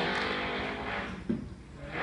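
Car engine sound, running and revving, with the die-cast toy car as its visual, that fades about a second in; a short knock follows shortly after.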